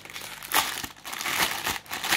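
Plastic bubble wrap crinkling and rustling in irregular bursts as hands pull it open to unwrap a parcel.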